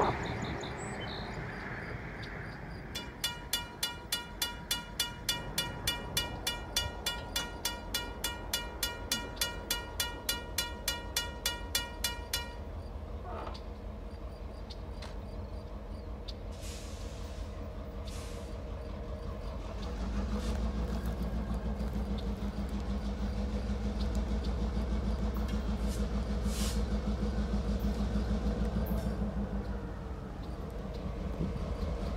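Grade-crossing bell ringing about twice a second, stopping about twelve seconds in. From about two-thirds of the way through, the steady low rumble of an approaching EMD diesel locomotive's engine comes in and stays.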